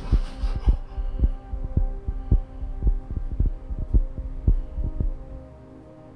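Film sound-design heartbeat, fast at about two beats a second, over a sustained low droning chord: a racing heartbeat for the man's fear. The beats stop a little over five seconds in, leaving the drone alone and quieter.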